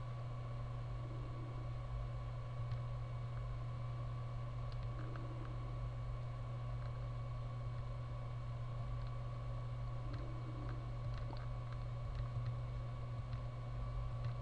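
A steady low hum with a thin steady tone above it, with a few faint computer mouse clicks as menu items and drop-down lists are picked.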